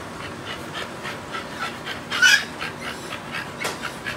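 American bully dog panting rapidly in short, quick breaths, with one louder, sharper sound about two seconds in.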